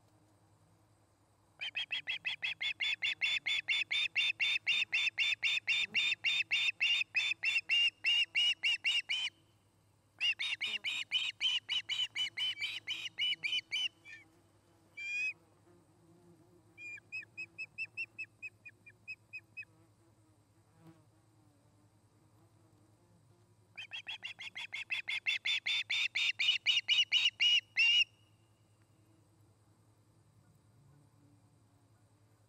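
Ospreys calling in long runs of rapid, high chirps, about five a second. There are four series with short pauses between them, and the third is softer.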